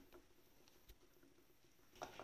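Near silence, with a few faint light ticks from a fork stirring softening chocolate in a glass bowl.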